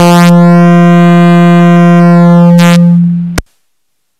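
A loud, steady electronic buzzing tone held at one pitch, cutting off abruptly with a click a little over three seconds in.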